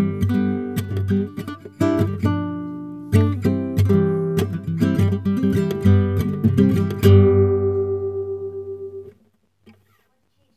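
Nylon-string classical guitar fingerpicked. About seven seconds in it plays a final chord that rings out and is then cut off by a hand damping the strings about two seconds later.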